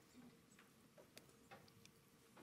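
Near silence: faint room tone with a steady low hum and a few faint clicks from a laptop being operated at a lectern.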